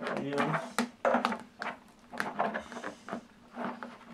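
A flexible translucent plastic backdrop sheet being handled and bent gently over an aluminium frame: a run of short crackles and knocks, over a steady low hum.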